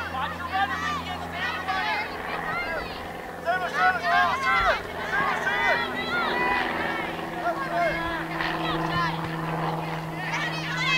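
Overlapping shouts from many high-pitched voices of players and spectators at a girls' soccer game, with no clear words, loudest about four seconds in. A steady low hum runs underneath.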